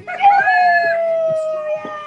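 A woman's long, high whoop of celebration, one held note sliding slowly down in pitch, over pop music still playing underneath.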